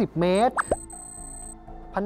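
A short cartoon pop sound effect, a quick upward-sweeping plop, about two-thirds of a second in, followed by sustained notes of light background music.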